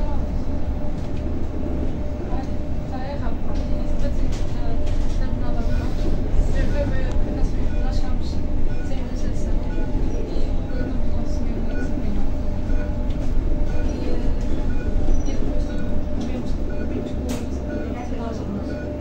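Cabin noise inside a moving Zhongtong N12 battery-electric city bus: a steady low rumble from the tyres running over cobbled setts, with a constant hum and light rattles of the body and fittings.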